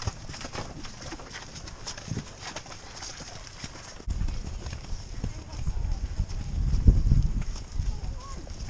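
Horse's hoofbeats on soft grass with tack jingling, heard from the rider's saddle. From about four seconds in, a heavy low rumble of wind buffeting the microphone joins in, loudest about a second before the end.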